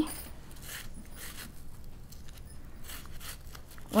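A small knife slicing through a red onion held in the hand: a few soft, crisp cuts at uneven intervals.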